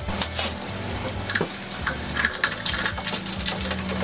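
Scissors snipping open a drink-mix sachet and the packet crinkling as its contents are tipped into a cup: a run of small clicks and rustles.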